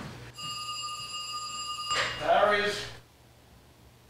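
Telephone giving a steady electronic tone for about a second and a half as it is taken off the hook, followed by a brief voice.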